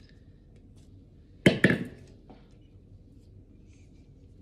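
A stainless steel mixing bowl set down on a stand mixer's base with a sharp metallic clank that rings briefly, followed at once by a second lighter knock.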